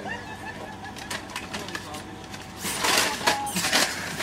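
Faint mixed speech from several people, with a short stretch of breathy laughter about three seconds in.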